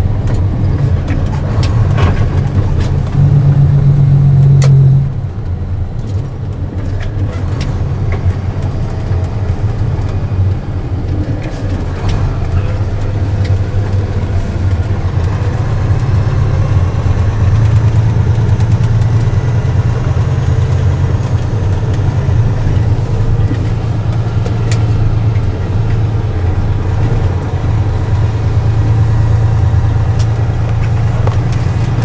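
Engine and road noise of a moving vehicle heard from inside its cabin, a steady low drone. It grows louder a few seconds in, then drops off suddenly about five seconds in.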